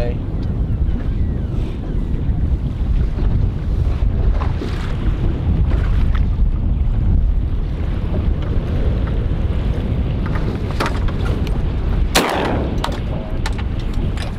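Strong wind buffeting the microphone over rough open water, with a single shotgun shot about twelve seconds in.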